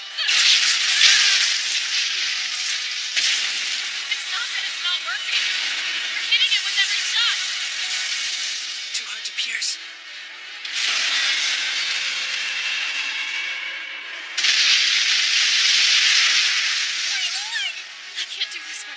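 Loud hissing rush of sound effects in four long stretches, each starting abruptly, with a few brief vocal sounds in the middle.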